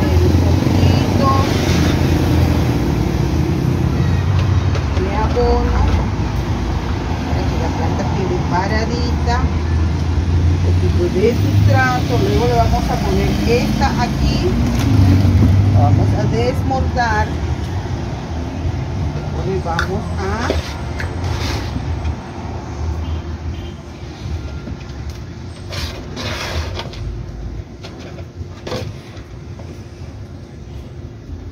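Street traffic: a motor vehicle's engine rumbling low and loud close by, dying away over the last third.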